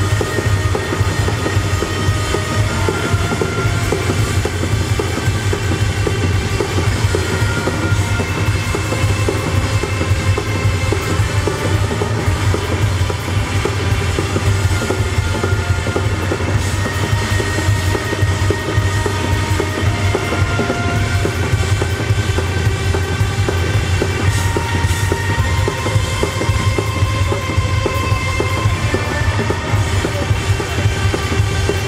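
A live rock band plays at full volume: a drum kit over a heavy, bass-dominated mix with electric guitars and keyboard, heard from within the audience in a club.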